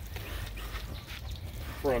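Garden hose spraying water onto the ambulance's metal body, a faint even hiss, under a low rumble of wind on the microphone.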